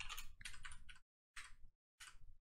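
Typing on a computer keyboard: quick runs of keystrokes entering a terminal command, with a short pause about a second in.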